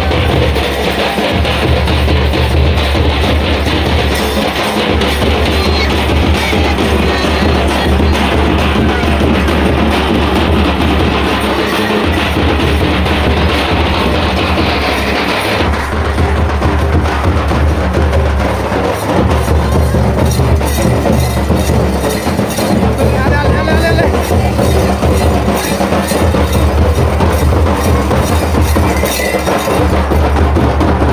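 Folk dance music played on a drum slung from a dancer's shoulder, beaten in a steady rhythm, with voices mixed in.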